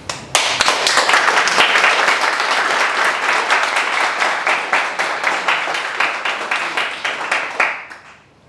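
Audience applauding, the many claps starting abruptly and dying away near the end.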